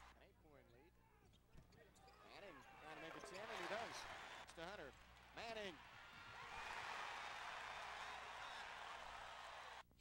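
Faint basketball arena sound: crowd noise with voices calling out, building into a steady crowd cheer for about the last three seconds.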